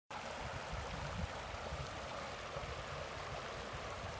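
Shallow river running over a gravel bed: a steady rush of flowing water.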